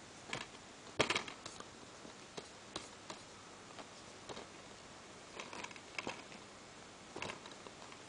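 Quiet, scattered plastic clicks and taps from a multi-disc DVD keep case being handled, its hinged disc trays shifted, with the loudest cluster about a second in.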